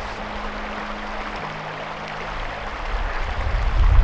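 Shallow rocky creek rushing steadily, with a few faint, low, held music notes beneath it. A low rumble builds toward the end.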